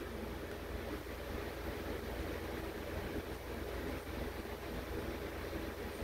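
Steady low rumble and hiss of background noise, even throughout, with no distinct events.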